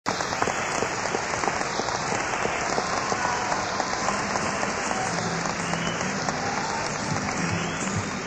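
Concert audience applauding, with the band's instruments faintly starting to play partway through.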